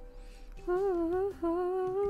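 A woman humming two held, wavering notes about a second long each, with a short break between them, over soft background music.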